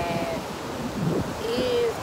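Ocean surf washing onto a beach, with wind on the microphone. A woman's voice is heard briefly at the start and again near the end.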